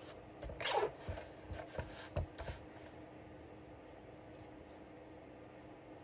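Sheet of scrapbook paper being slid and positioned on a paper trimmer: a few brief rustles and scrapes in the first two and a half seconds, then only a faint steady hum.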